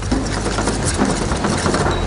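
Fettuccine being mixed with a utensil in a copper mixing bowl: a quick, continuous run of small clicks and scrapes of the utensil on the bowl, over a steady low hum.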